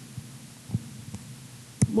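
Faint light taps of a pen on an interactive whiteboard while writing, over a low steady hum, with a sharper click near the end.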